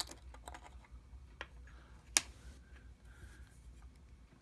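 Small clicks and light metallic taps as the screw-down caseback of a Seiko 6105-8110 diver's watch is turned off by hand and lifted away, with one sharper click about two seconds in.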